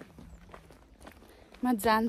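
Faint footsteps of people walking on a path, soft irregular steps close to the microphone, with a woman's voice starting up near the end.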